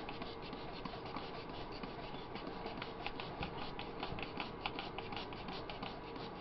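Hand-held trigger spray bottle squeezed over and over, misting water onto sphagnum moss and potting soil: a quick run of short, fairly quiet spritzes.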